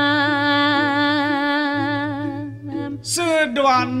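A solo voice singing a Balinese geguritan verse in the Sinom melody, holding one long note with a slight waver until about two and a half seconds in. After a short break a voice starts again near the end.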